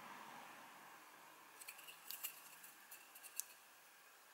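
Faint clicks and crunches as a kitchen knife blade cuts notches into the rim of a plastic bottle cap. Quiet at first, then a run of small sharp clicks from about halfway, the sharpest one near the end.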